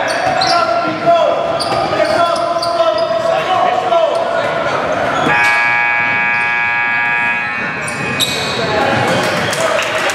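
A basketball dribbling on a hardwood gym floor, with voices echoing around a large gym. About five seconds in, a gym buzzer sounds one steady, harsh tone for about three seconds.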